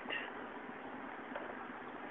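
Steady, even noise inside the cab of an old truck as it pulls out onto the street.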